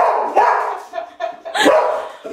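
A dog barking excitedly, a few sharp barks in quick succession.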